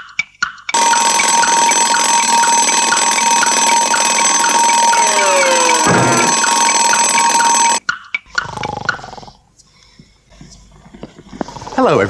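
Alarm clock ticking quickly, then its bell ringing loudly and continuously for about seven seconds before cutting off abruptly. A thump lands about six seconds into the ringing.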